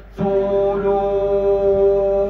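A man's voice chanting, holding one long steady note after a brief pause at the start.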